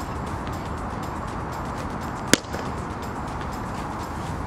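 A cricket bat striking the ball once, a single sharp crack about two and a half seconds in, as a lofted shot is played.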